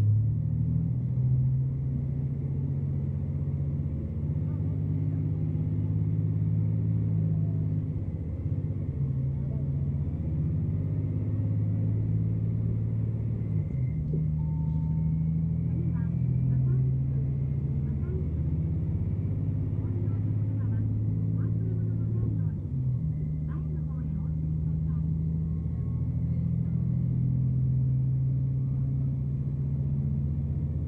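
Diesel railcar heard from inside the passenger cabin while running: a steady low engine drone whose pitch shifts up and down in steps, with a few faint clicks in the middle.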